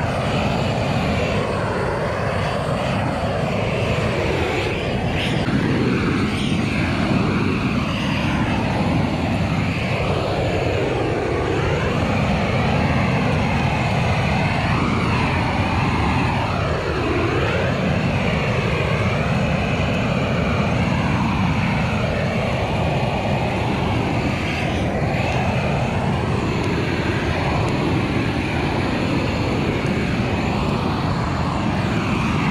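Propane weed burner torch burning steadily: a loud, continuous rushing of the flame, its tone slowly sweeping up and down.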